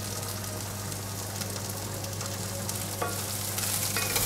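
Basmati rice and whole spices frying in ghee in a heavy pan, a steady sizzling hiss that grows a little louder near the end.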